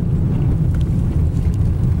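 Steady low rumble inside a car in the strong outflow wind of a thunderstorm, the wind and the vehicle blending into one dull roar without any distinct events.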